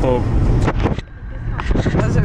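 Low, steady rumble of a car heard from inside the moving cabin, under people talking; it dips briefly about a second in.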